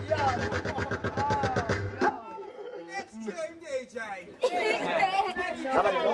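Excited, shouting voices over a fast rap beat with a bass line for about two seconds, then an abrupt change to a quieter stretch of voices and crowd chatter that grows louder near the end.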